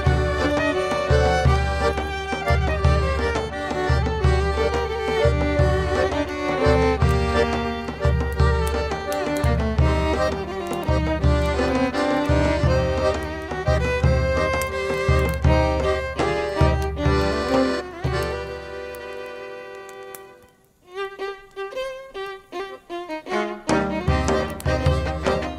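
Klezmer band playing live: fiddle melody over accordion, with a poyk bass drum keeping a steady beat. About 19 s in, the music thins out and drops almost to nothing for a moment. It then comes back as a lighter passage of short notes, and the drum returns near the end.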